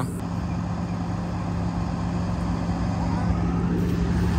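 Steady low hum with an even rush of air inside a car cabin, holding level with no change.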